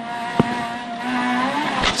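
Honda Integra rally car's engine heard from inside the cabin, running steadily under load at speed. There is a single sharp thump about half a second in as the car crosses a bad bump.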